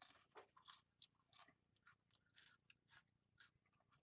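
Cheez-It crackers being chewed: a faint, irregular run of dry, crisp crunches.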